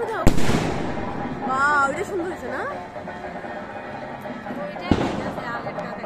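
Aerial firework bursting overhead with a loud bang just after the start and a fading tail, followed by a second bang about five seconds in.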